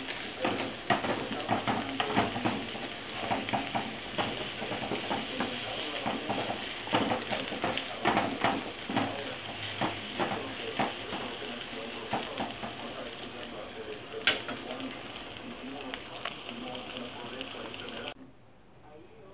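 Eggs with tomato, spinach, hot dog and salami sizzling in a frying pan while a wooden spatula stirs and scrapes them, with frequent irregular scraping clicks against the pan and one sharper tap late on.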